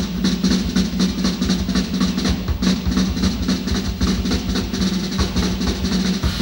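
Drum kit played live, the toms struck in a fast, even run of about six strokes a second over a steady low note.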